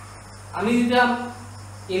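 A man's voice speaking a short phrase about half a second in, with a steady low hum throughout.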